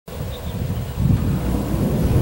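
Wind buffeting the microphone: an uneven low rumble that grows louder about a second in.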